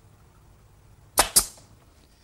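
Brad nailer driving brads into a glued mitred wooden frame corner: two quick sharp pops close together, a little over a second in.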